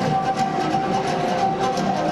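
Live Moldavian folk dance music: a long wooden flute holds a steady high note over a strummed short-necked lute and a quick, even drum beat.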